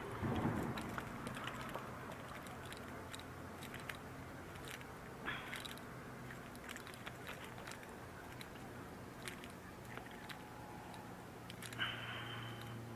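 Scattered small clicks and rustles of fishing line and tackle being handled in a kayak, with a few short louder scrapes, over a low steady hum.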